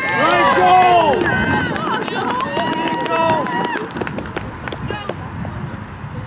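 Several voices cheering and shouting together as a goal goes in. The cheer is loudest in the first second or so and dies away after about four seconds.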